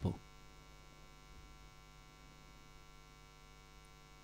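Faint, steady electrical mains hum in the recording, a low even drone, with the tail of a man's voice cut off at the very start.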